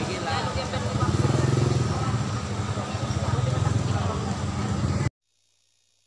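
Busy outdoor market ambience: a jumble of voices over a low engine rumble. The sound cuts off abruptly to near silence about five seconds in.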